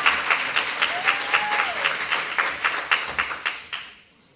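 Audience applauding, many hands clapping, dying away near the end.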